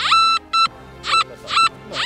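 Nokta Makro Gold Finder 2000 metal detector giving about five short beeps as its coil is swept back and forth over an iron meteorite in all-metal mode. Each beep slides up into a steady tone: the detector's response to the iron target.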